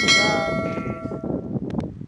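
A single bright bell chime, the notification-bell sound effect of a subscribe-button animation, struck once and ringing out, fading over about a second and a half.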